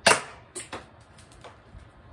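BB gun firing one shot at a cardboard box: a single sharp crack right at the start, followed by a few lighter clicks and taps.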